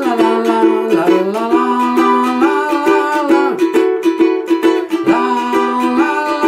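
Ukulele strummed in a steady, even rhythm, with a man's voice singing along in a wordless melody.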